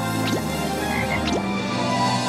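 Television theme music, with two short rising bubbly effects about a second apart.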